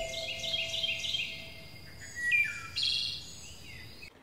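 Songbird chirping: a quick run of short high chirps, then two louder calls in the second half. A held musical note fades away during the first second and a half.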